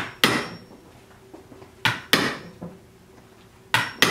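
Hammer blows driving a punch into a boot's bottom to make holes for wooden pegs: three pairs of quick double strikes, about two seconds apart.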